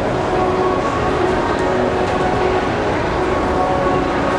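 Steady mechanical rumble and hum with a few held tones, from running escalators.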